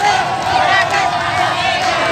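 A large crowd cheering and shouting, many voices overlapping, celebrating a winning rowing-boat crew.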